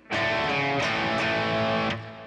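Electric guitar playing the end of a hard-rock rhythm riff: a chord struck and left ringing, with a couple of further picked strokes near the middle, then stopped just before the end.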